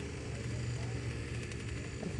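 Paramotor engine idling steadily.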